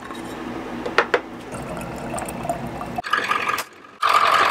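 Water running into a bottle as it is filled, with a couple of sharp clicks about a second in.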